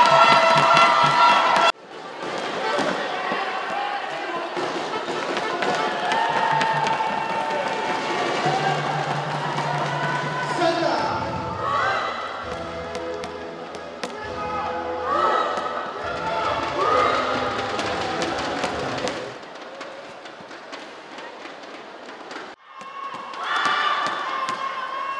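Music and a voice in a sports arena, with crowd noise. The sound cuts off sharply about two seconds in and again shortly before the end, each time picking up at a different level.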